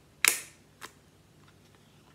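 A handheld plier-style hole punch snapping through a paper tag: one sharp click, followed about half a second later by a fainter click.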